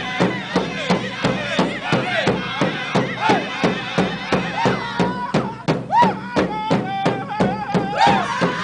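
Powwow drum group: several drummers strike one large powwow drum together in a steady beat, about three or four beats a second, while the men sing over it in unison, with a long held note near the end.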